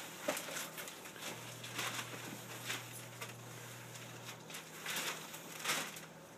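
Gift wrapping paper rustling and crinkling in irregular short bursts as it is pulled off a cardboard box, worked carefully rather than torn.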